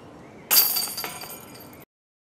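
Putter disc striking the hanging chains of a disc golf basket: a sudden loud metallic jangling about half a second in, with a second smaller rattle near one second, fading until it cuts off suddenly.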